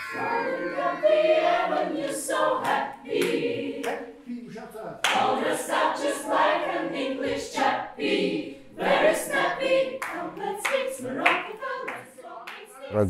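A choir of women's voices singing in short phrases that break off often.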